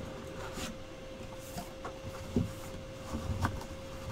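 Cardboard trading-card box being handled and opened: soft scrapes and light knocks, with one sharper knock about two and a half seconds in.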